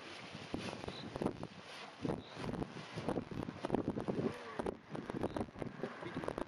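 Wind buffeting the microphone in uneven gusts, with irregular low rumbles and knocks.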